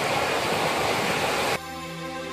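Ocean surf, waves breaking on a beach as a steady rushing wash, cut off abruptly a little over halfway through as soft music with sustained notes begins.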